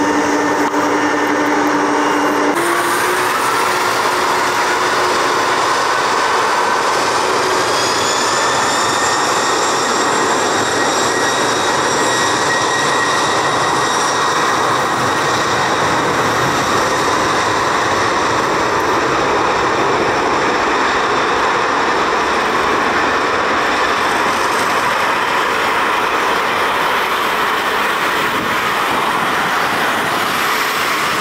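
Boeing 747 freighter's four turbofan engines spooling up for takeoff on a wet runway: a whine climbs in pitch over the first several seconds, then holds steady under loud, even jet noise as the aircraft rolls away through the spray.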